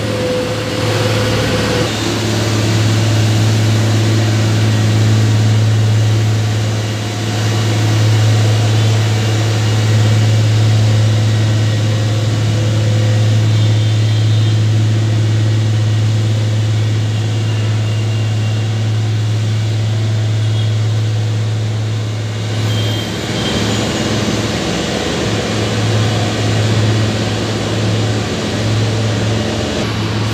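Road traffic passing below: a steady mix of car, motorbike, auto-rickshaw and bus engines and tyre noise over a constant low engine hum that wavers and weakens near the end.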